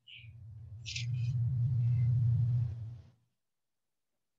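Low rumble, with short rustles at the start and about a second in, from movement and handling right by the microphone as someone carrying kicking paddles passes close. It swells, then cuts off after about three seconds.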